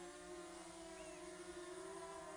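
DJI Mavic Mini quadcopter hovering, its brushless motors and propellers giving a faint, steady buzzing whine.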